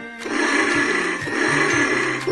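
Lil' Rider battery-powered 3-wheel chopper trike toy playing its electronic motorcycle-engine sound effect through its small speaker, set off by a dashboard button press: a loud, noisy rumble that starts about a quarter second in and holds steady, over background music.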